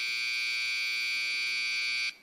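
Electronic buzzer in a meeting room sounding one steady, high-pitched buzz at an even level.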